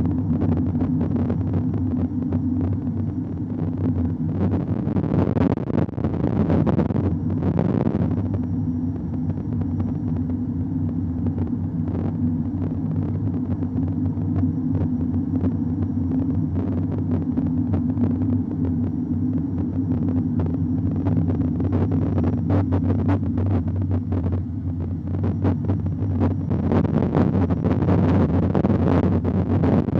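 Car driving, heard from inside the cabin: a steady low drone of engine and road noise, with scattered light ticks.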